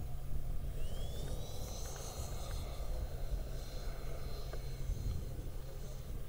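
Twin 64 mm electric ducted fans of a model F-15 jet in flight: a thin high whine that rises in pitch about a second in as the fans speed up, then holds steady, over a low steady rumble.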